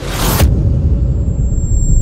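Cinematic logo-reveal sound effect: a short bright whoosh burst in the first half second, then a deep, loud rumble that carries on with a thin high steady tone above it.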